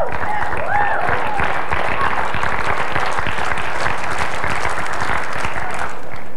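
A congregation applauding, with a few voices calling out near the start.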